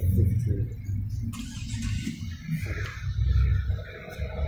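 A small SUV driving past close by on an asphalt street, with steady low road rumble.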